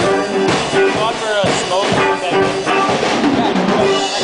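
A live rock band playing, with a steady drum beat of about two beats a second under sustained pitched notes, one sliding in pitch about a second in.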